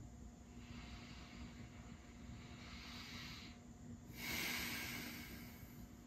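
Faint, slow, deep breathing through the nose: a soft breath lasting about three seconds, then a louder, shorter one about four seconds in.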